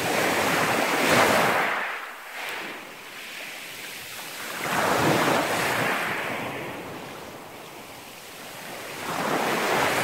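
Small sea waves breaking and washing up over a pebble shore, in three surges about four seconds apart: one at the start, one about five seconds in and one near the end, with quieter wash between them.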